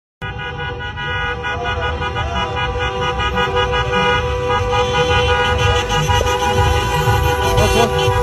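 Several car horns held down together in a convoy of cars, a steady unbroken chord of horn tones over low engine and street rumble: celebratory honking for a wedding procession.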